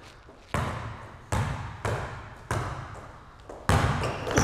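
A basketball bouncing hard on an indoor court floor: about five dribbles at uneven spacing, each echoing in the gym. The last, near the end, is the loudest.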